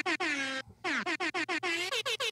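Air-horn sound effect played over music, its blasts chopped into a rapid stutter, some sliding down in pitch.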